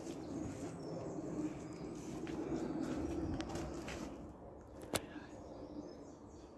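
A pigeon cooing, a low repeated call that fades after about four seconds, with one sharp click about five seconds in.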